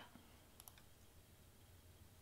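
Two faint computer mouse clicks a little past half a second in, otherwise near silence.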